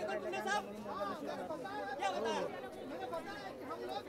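Several voices talking and calling out over one another, with crowd chatter behind them.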